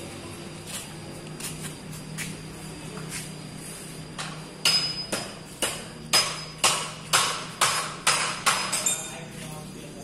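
Repeated sharp hammer blows on metal, about nine strikes roughly two a second, starting a little before halfway through, some ringing briefly. A steady low hum runs underneath.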